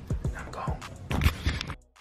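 Background music with a rhythmic drum beat: repeated short low thumps and clicks that cut off suddenly near the end.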